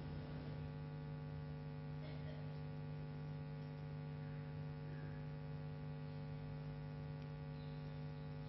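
Steady electrical hum from the microphone and sound system, a low drone with a few fixed higher tones above it, unchanging throughout.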